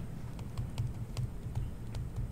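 Stylus pen tapping and clicking on a tablet screen while handwriting, light irregular clicks about three a second over a steady low room hum.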